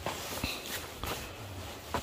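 A few soft footsteps on bare dirt ground, quiet and spaced out.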